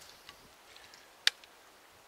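The hammer of a percussion muzzleloader being drawn from half-cock to full-cock: a single sharp metallic click about a second in.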